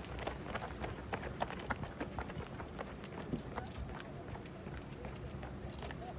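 Running footsteps of several runners slapping on asphalt, quick and close in the first few seconds and sparser and fainter after that.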